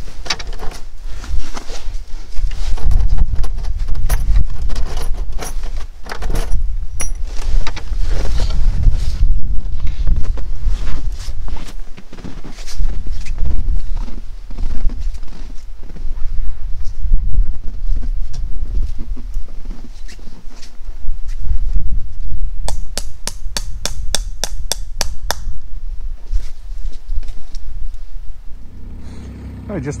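Clatter, knocks and scraping of a 330 body-grip trap and wooden boards being handled at a wooden trap box, over a heavy, uneven low rumble. Near the end comes a quick run of about ten sharp taps, about four a second.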